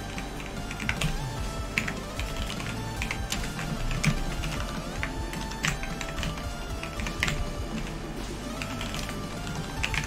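Computer keyboard typing in irregular runs of keystrokes, over background music.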